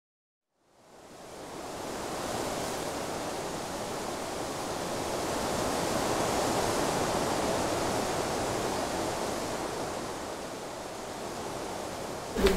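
A steady rushing noise with no tune or pitch, fading in after about a second of silence, swelling gently toward the middle and easing off a little near the end.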